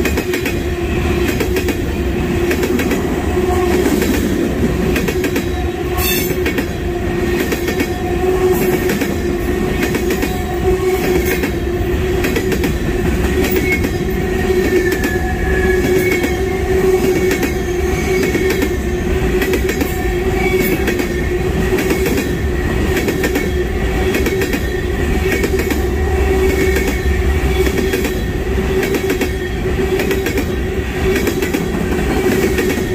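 Freight train of tank cars rolling steadily past close by: a continuous rumble of steel wheels on rail, with repeated clicks as the trucks cross the rail joints and a sharp clack about six seconds in. A faint high wheel squeal comes and goes partway through.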